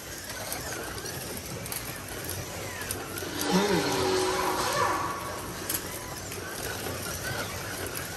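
1/24-scale Carrera digital slot cars running on the track: a steady whirring haze of small electric motors and pickups on the rails. About halfway through there is a brief pitched call that rises and then holds, like a voice.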